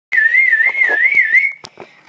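A person whistling one wavering high note, the pitch wobbling a little up and down about four or five times a second, which stops with a short click.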